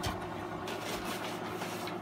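A low steady hum with faint rustling of paper and plastic as things are handled in a box, and a small knock just after the start.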